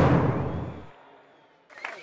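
The ringing tail of a music sting's closing hit, fading steadily away over about a second and a half to near silence; music comes back in just before the end.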